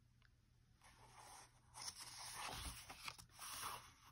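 A paper picture-book page being turned: faint rustling and scraping of paper, starting about a second in and lasting about three seconds.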